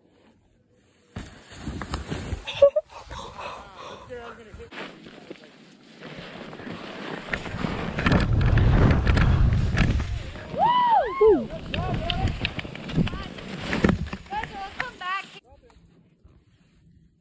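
Skis sliding and scraping over snow, with wind buffeting the helmet camera's microphone. It starts about a second in and is loudest around eight to ten seconds in. A few whooping shouts come near the end.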